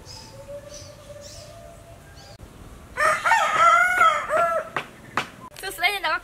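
A rooster crowing once, about halfway through: a single loud call of just under two seconds.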